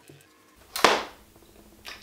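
A single short whoosh a little under a second in, rising fast and fading over about half a second, with a softer knock near the end.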